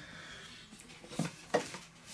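Quiet room with faint handling noise from the kit in his hands: two small clicks, about a second and a second and a half in.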